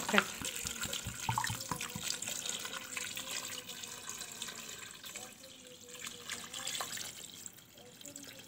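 Water poured steadily from a jug into a large aluminium pot of pumpkin chunks and raw shrimp, splashing as it fills, then growing quieter over the last few seconds as the pour eases.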